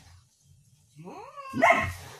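A dog calls out: after a second of near silence, a few short rising yelps build into one loud bark near the end.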